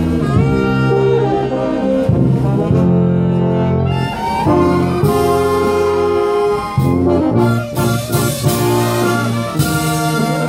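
Brass band of trumpets, trombones and saxophones playing a slow melody in long held chords, with some percussion hits in the second half.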